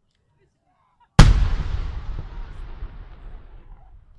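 A large aerial firework shell bursting: one loud bang about a second in, followed by a long echo that slowly fades away.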